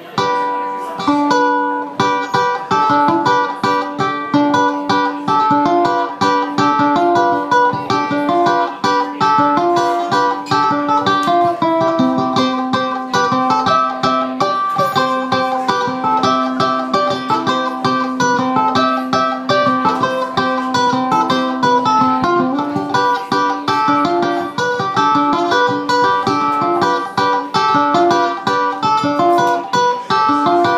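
Ukulele played as an instrumental, a quick picked melody of many short plucked notes without singing.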